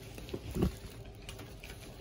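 Small taps and light rustles of cardboard and plastic candy boxes being handled, with a soft low thump a little over half a second in as one is set down.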